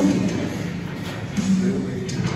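Indistinct male voices, with a short voiced sound about a second and a half in.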